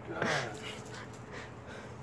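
Pug puppy whimpering briefly, then panting softly, as it is set down on the ground.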